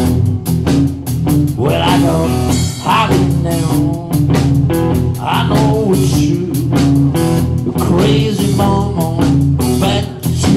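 Live blues band playing: electric guitar, bass guitar and drums at a steady beat, with a lead line of sliding, bending notes.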